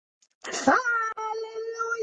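A woman's voice holding one long, steady sung note, beginning about half a second in.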